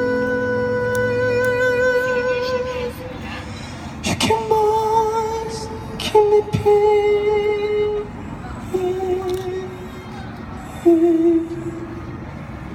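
Live keyboard and voice: a male singer holds a long wordless note with vibrato, then sings a few shorter held notes over soft electric-piano chords.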